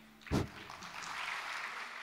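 Audience applause starting after the last guitar chord of a song dies away. A single loud thump comes about a third of a second in, then the clapping builds and holds steady.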